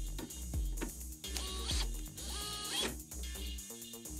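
Background music with a steady bass line, over which a Makita cordless drill runs twice in short bursts with a rising whine, spinning a socket held on a screwdriver bit whose tip has been ground down into a socket adapter.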